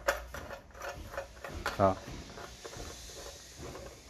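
Light, irregular clicks and ticks of a chrome swivel joint being screwed by hand into a white ABS plastic shower head, several in quick succession during the first second and a half, then fading to a faint handling sound.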